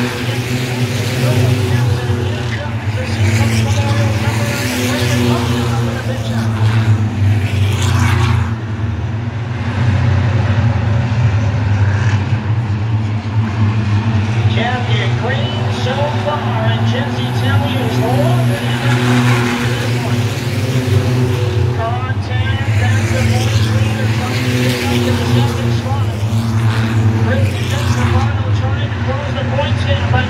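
A pack of short-track stock cars racing, their engines droning steadily. Cars pass close several times with rising and falling sweeps, the clearest a few seconds in, near eight seconds, around twenty seconds and again near twenty-seven seconds.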